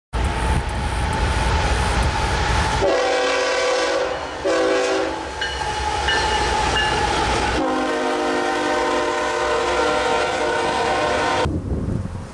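BNSF diesel freight locomotives passing close by with a deep rumble while the lead unit's multi-tone air horn sounds a blast, a short blast, then a long blast that cuts off abruptly near the end.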